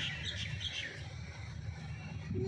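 Small birds chirping a few quick times in the first second, over a low steady rumble.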